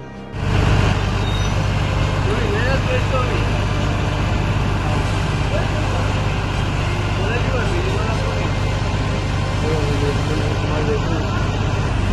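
Hydraulic excavator's diesel engine running steadily, starting suddenly just after the start, with people's voices calling over it.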